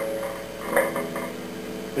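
A couple of quiet single notes picked on a Fender Telecaster electric guitar, about three-quarters of a second and a second and a quarter in, left to ring steadily.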